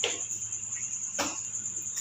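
A cricket trilling steadily in the background, a continuous high-pitched pulsing chirp. Two brief soft noises break in, one at the start and one just past a second in.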